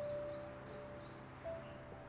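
Soft background music: a single held note that steps up in pitch about one and a half seconds in, with four short high chirps in the first second.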